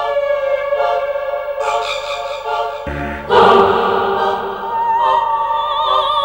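Soundtrack music of sustained chords with a wordless choir, swelling louder and fuller about three seconds in, the voices singing with vibrato near the end.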